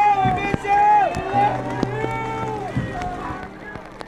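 Voices calling out in long, drawn-out shouts, several held notes that fall away at the end, quieter in the last second.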